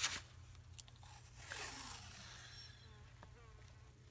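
Washi tape being pulled off its roll and pressed down onto paper: a faint, short rasp about a second and a half in, with a few soft handling clicks.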